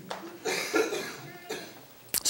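A person coughing, loudest about half a second in.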